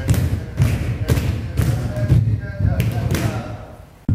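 Group of barefoot dancers stamping in unison on a wooden studio floor during Odissi footwork, about two heavy thuds a second, easing off near the end.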